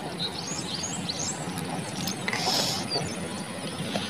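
Outdoor lakeside background with small birds chirping in short, high rising and falling calls. About halfway through there is a brief rustling hiss as the wet nylon gill net is handled.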